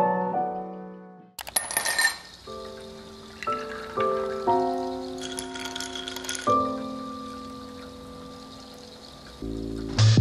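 Soft piano music with slow held notes. About a second and a half in, ice clinks against a glass. Around five to six seconds in, liquid is poured into a glass of iced coffee.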